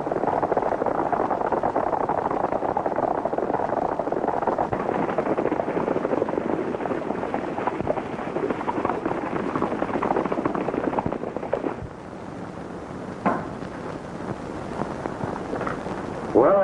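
A group of horses galloping, a dense continuous clatter of hoofbeats. The clatter drops away about 12 s in to a quieter hiss, with a single sharp knock about a second later.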